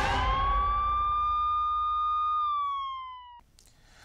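Police-siren sound effect in a TV programme's logo bumper: one wail that rises, holds, then slides down and cuts off suddenly about three and a half seconds in, heard over the fading tail of a loud hit.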